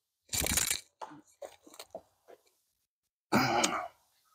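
A sharp, breathy grunt as a forehand disc golf throw is released, then a few faint crunches of footsteps on dry pine straw and twigs, and a second short groaning breath near the end at a shot that went badly.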